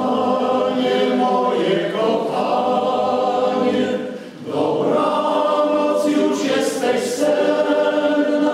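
Men's choir singing sustained chords in several parts, with a short break for breath about four seconds in and crisp 's' sounds near the end.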